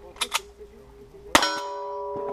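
A single gunshot about a second and a half in, followed by the ringing of a struck steel target. Two quick metallic clicks come shortly before the shot.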